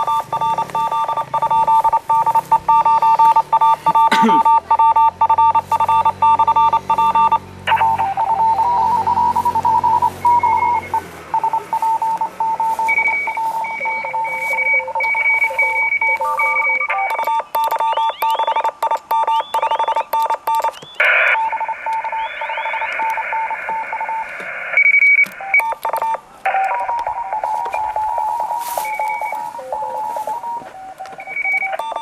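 Morse code (CW) signals from a ham radio transceiver's speaker: several stations keying at once at different pitches, as in a pileup calling a portable station. After the middle some tones briefly slide in pitch.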